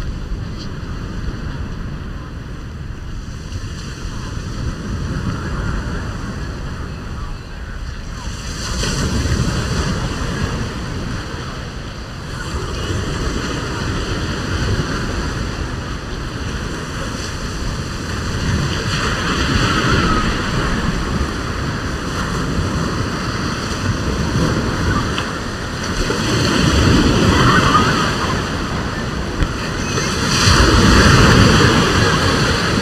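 Small Gulf of Mexico waves breaking and washing up a sand beach, with wind buffeting the microphone. The surf swells louder a few times, around a third of the way in, past the middle and near the end.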